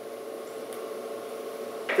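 Quiet room tone: a steady, faint hum with no other distinct sound.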